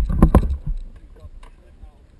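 A quick run of loud knocks and thumps in the first half second, with heavy low rumble, then a much quieter stretch.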